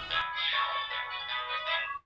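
A tinny sung advertising jingle for Quark's bar, played through a small speaker, cutting off suddenly at the end.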